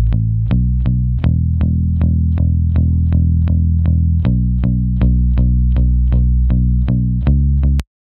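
Electric bass guitar playing a steady line of picked notes, about four a second, with the pitch of the line changing every few seconds. It runs through the Waves RS124 compressor plugin with its input driven hard for 15 to 20 dB of compression, and the level stays even with no ducking. The playback stops suddenly just before the end.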